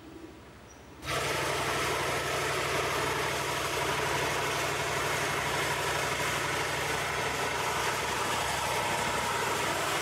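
A machine running with a steady, loud noise and a low hum underneath. It starts suddenly about a second in and keeps an even level throughout.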